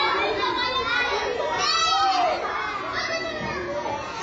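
A group of children playing, many high voices calling and shouting over one another.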